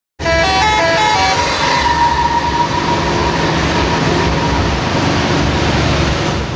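Engine rumble and road noise heard inside a moving bus on a highway. It opens with a quick run of high pitched notes, several short notes stepping up and down in about a second, and then a steady high tone.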